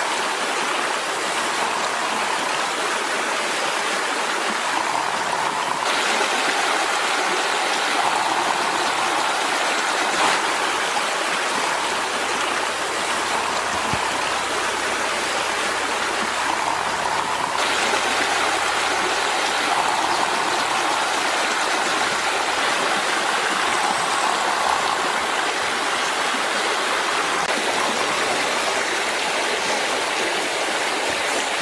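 Steady rushing of water from a shallow stream running over rocks, with slight shifts in its sound about six and eighteen seconds in.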